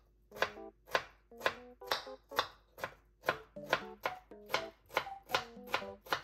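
Chef's knife finely chopping pickled yellow radish (danmuji) on a cutting board: a steady run of crisp knocks as the blade hits the board, about two a second at first and quickening to about three a second toward the end.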